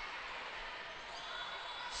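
Faint, even background noise of an indoor volleyball gym: distant voices and court noise under the pause in commentary.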